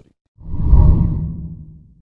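A deep whoosh sound effect for a graphics transition. It swells up about half a second in and fades away over the next second.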